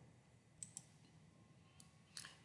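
Near silence with a few faint, short clicks: two close together just over half a second in, and one more near the end.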